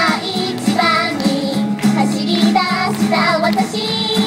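Japanese idol group of young women singing an upbeat pop song live into handheld microphones over recorded backing music.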